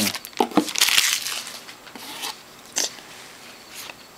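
Trading-card pack wrapper crinkling as it is torn off the cards, followed by a few short clicks as the cards are handled.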